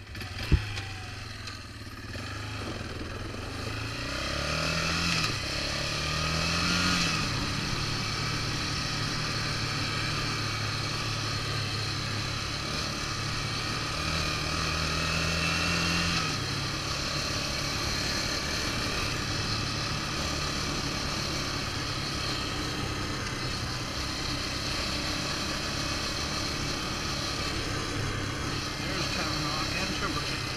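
Yamaha Raptor 350 quad's single-cylinder four-stroke engine running under way, with a hiss of wind and gravel under the tyres; the engine pitch rises twice as it accelerates. A sharp knock sounds about half a second in.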